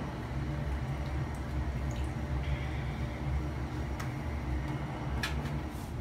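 Faint sloshing and dripping as a shaped pretzel dough is dipped and turned in a shallow pan of baking soda solution, over a steady low hum.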